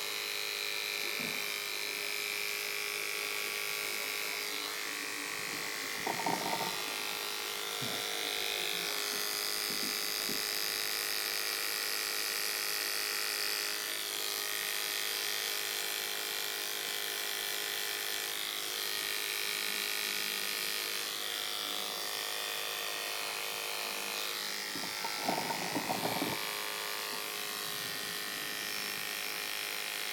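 Electric hair clippers buzzing steadily as they cut short hair on the side and back of a head, the pitch shifting slightly now and then as the blade works. Two brief louder sounds stand out, about six seconds in and about twenty-five seconds in.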